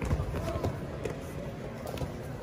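Dull thumps of grapplers' bodies on foam competition mats over a murmur of voices in a large hall. The loudest thump comes just after the start and another about half a second later.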